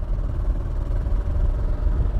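Motorcycle running at a steady cruising speed, with a constant low rumble of engine and wind noise on the rider's microphone.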